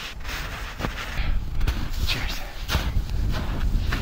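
Snow crunching and swishing in irregular strokes, with wind rumbling on the microphone; it grows louder about a second in.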